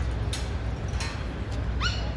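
A dog gives a short, high, rising yip near the end, after a couple of brief sharp barks or clicks earlier on, over a steady low background rumble.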